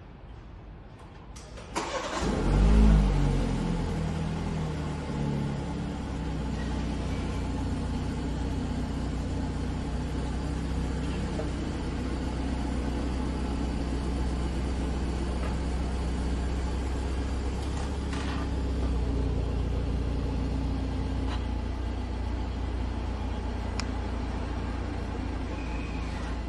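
BMW 7 Series engine started remotely from the display key: it catches about two seconds in, flares up briefly, then settles into a steady idle.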